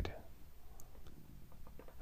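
A pause in a spoken reading: faint room hiss with a few soft, small clicks scattered through it.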